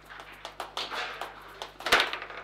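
Foosball table in play: quick, irregular clacks of the ball against the plastic players and rods, ending in one hard, loud strike just before the end.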